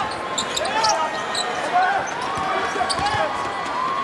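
Sneakers squeaking on a hardwood basketball court in short chirps, with a basketball bouncing now and then, over steady arena background noise.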